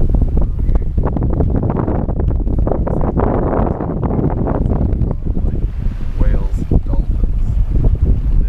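Wind buffeting an action camera's microphone on a sailboat under way at sea, with the rush and splash of water along the hull swelling for a couple of seconds near the middle.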